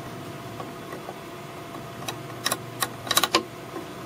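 Ethernet cable's RJ45 plug being pushed at the Ethernet shield's jack: a few small plastic clicks about halfway through, then a quick cluster of clicks near the end, over a steady low hum.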